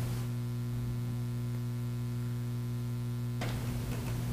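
Steady electrical mains hum in the audio feed, with a brief rustle near the end.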